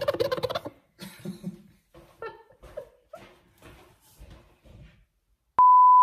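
A woman laughing, loud at first and then trailing off into soft, scattered giggles and breaths. Near the end, a steady, high-pitched, single-tone beep starts abruptly.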